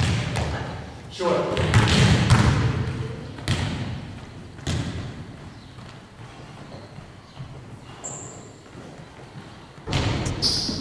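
Basketballs bouncing on a hardwood gym floor: a few separate thuds, each ringing briefly in the large hall, the last about five seconds in.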